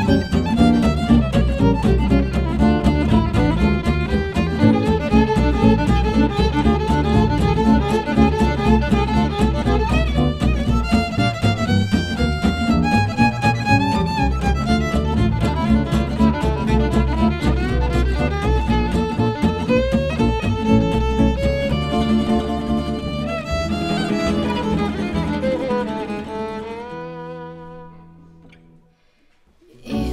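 Gypsy jazz band playing an instrumental break: violin solo over rhythm guitar and double bass. Near the end the music thins out and stops for a moment.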